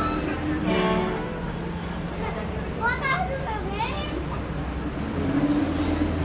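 Indistinct chatter of the people gathered around, including brief high-pitched voices near the middle, over a steady low hum.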